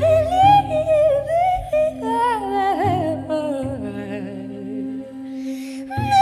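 Wordless female jazz vocal, humming and gliding freely up and down in pitch, over steady held low notes from a cello. The voice breaks off near the end and comes back in.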